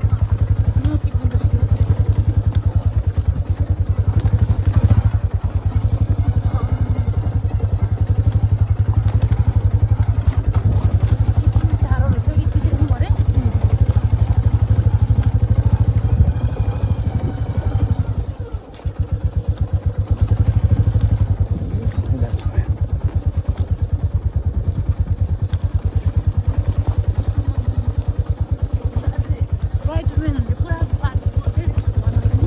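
Royal Enfield motorcycle engine running at low speed under load, pulling the bike over a rocky track with a steady, even beat. The engine note dips briefly just past halfway, then picks up again.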